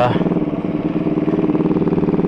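Motorcycle engine running at a steady speed while being ridden, its firing pulses even and unbroken.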